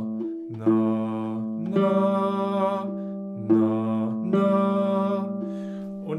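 Classical guitar playing the ascending minor seventh A to G twice: a low A is plucked, then the G above it, and the two notes ring on together and slowly fade.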